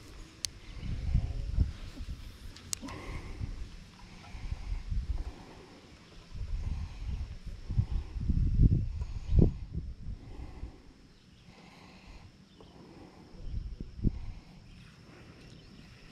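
Irregular low rumbling and dull thuds of handling noise from the rod and reel being worked, with a few sharp clicks.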